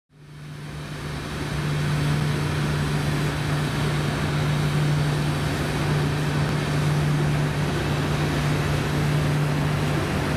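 A ferry's engine machinery running with a steady low hum over a wash of mechanical noise. The sound fades in over the first couple of seconds, then holds level.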